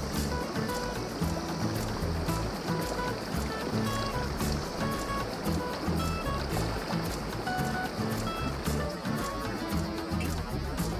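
Background music with a steady beat, short synth notes and a pulsing bass line.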